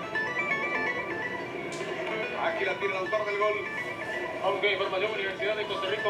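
A short run of stepped high electronic notes, like a broadcast jingle, over steady stadium crowd noise, heard through a television speaker.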